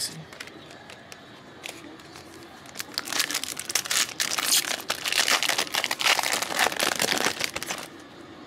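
Foil trading-card pack wrapper being torn open and crinkled by hand: a dense, crackly rustle that starts about three seconds in and stops shortly before the end.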